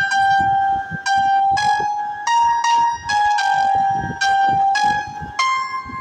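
Mobile keyboard app playing a single-line melody in a trumpet-like synthesized voice, about ten held notes moving stepwise, each with a sharp attack.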